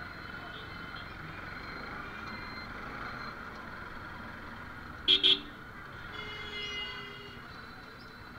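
Two short, loud vehicle horn beeps about five seconds in, over the steady noise of a motorcycle riding through street traffic.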